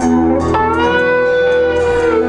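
Band music played live, led by an electric guitar holding long sustained notes. About half a second in, the guitar slides up to a new pitch and holds it over a steady low note.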